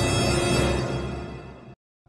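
Intro music made of sustained tones, fading out over the second half and ending in silence just before the end.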